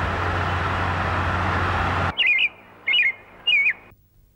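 Steady noise of busy city road traffic, cutting off abruptly about two seconds in. Then three short bird chirps, evenly spaced about half a second apart.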